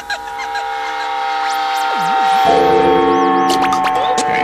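Electronic music built from samples: several held electronic tones, with a run of repeated high swooping glides through the middle. Lower sustained tones come in about halfway and the music grows louder.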